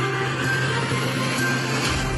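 News-programme intro music: a steady low drone under a swelling whoosh that builds toward the end.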